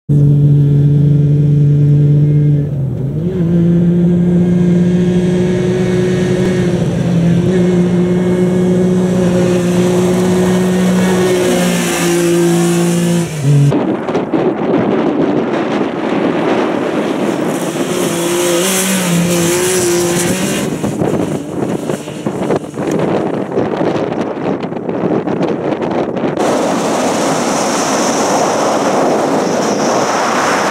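Rally side-by-side's engine held at high steady revs, its pitch stepping up and down a few times. About a third of the way in, the sound changes abruptly to a rougher mix of engine, tyre and gravel noise, with heavy wind rush on the microphone near the end.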